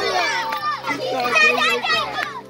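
Several children shouting and chattering at once, their high, excited voices overlapping.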